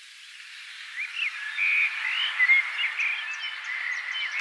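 Nature ambience fading in: many short, high chirping calls overlapping above a steady hiss, growing louder.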